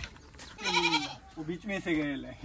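A goat bleating: one quavering call lasting about half a second, starting about half a second in.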